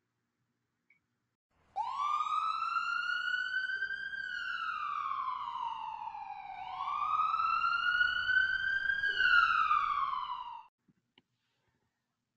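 Emergency-vehicle siren in a slow wail: it comes in about two seconds in, rises, falls, rises again and falls, then cuts off suddenly near the end.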